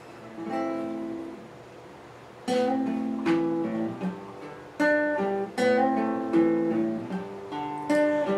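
Classical guitar strummed: one chord rings about half a second in, then after a short lull a run of strummed chords starts at about two and a half seconds, each left to ring, as a song's introduction.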